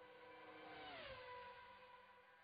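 Very quiet logo sting: held electronic tones with a quick downward pitch glide about a second in, fading away.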